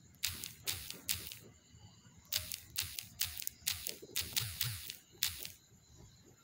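Typing on a phone's on-screen keyboard: a run of about a dozen short, irregular taps.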